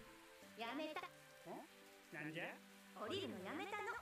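Anime episode audio playing quietly: short stretches of subtitled Japanese dialogue over soft background music.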